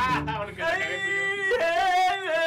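A singer's voice into a microphone, a wordless vocal line with wavering, sliding pitch, starting about half a second in as the ring of the drum kit dies away.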